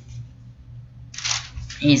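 A pause in a man's speech with only a low steady hum, then a short breathy noise about a second in, and his voice starting again near the end.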